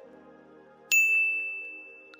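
A single bright chime-like ding sounds about a second in, loud and sudden, then rings out and fades over the next second. Soft sustained intro music plays beneath it.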